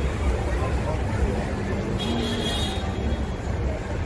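City street noise from the open top deck of a tour bus: a steady low rumble of bus and traffic under crowd chatter. A brief hiss comes about two seconds in.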